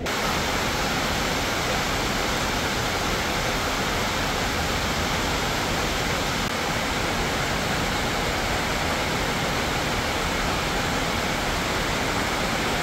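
A steady, even rushing hiss with no rhythm or change in loudness, cutting in abruptly at the start.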